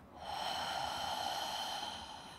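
A woman's long, audible exhale of about two seconds, picked up close on a headset microphone; it swells in just after the start and fades away near the end. It is the out-breath that goes with softening and rounding the chest forward in a spinal flexion exercise.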